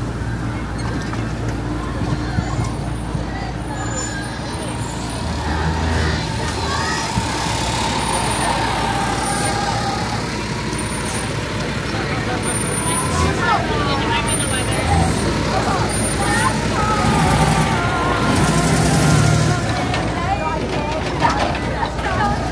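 Busy city street ambience: motor traffic running, with a low engine hum from a large vehicle through the first few seconds, and the voices of passing pedestrians.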